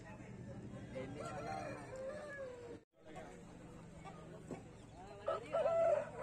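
A rooster crowing loudly near the end, the call held and falling in pitch at its close, over background chatter.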